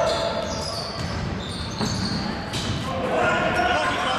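Indoor basketball game in a reverberant gym: a ball dribbling on the hardwood court, sneakers squeaking, and players' indistinct shouts.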